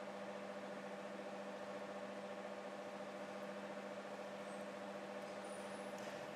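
A steady hum with a few constant tones and an even hiss beneath, unchanging throughout.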